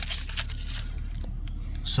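Mercedes-AMG GLC 43's twin-turbo V6 idling as a steady low hum, heard from inside the cabin, with light rubbing and a few faint clicks from the handheld camera moving about.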